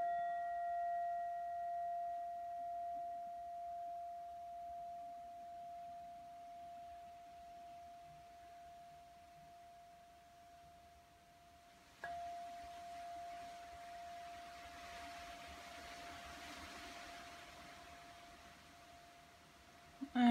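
Singing bowl ringing after a strike with a felt-tipped mallet: one steady tone with fainter higher overtones, wavering slowly as it fades. It is struck a second time about twelve seconds in and rings on.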